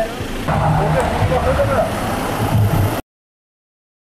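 Vehicle engine and road noise heard inside a minibus cabin, with indistinct voices in the background. It cuts off abruptly about three seconds in, leaving dead silence.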